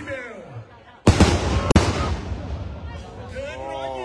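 A loud explosive bang about a second in from a bang fai rocket bursting at its launch site, with a rumbling decay and a second sharp crack just after. A voice calls out near the end.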